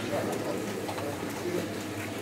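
Low, broken voices of mourners gathered in a small room, faint murmuring and soft vocal sounds with no clear words.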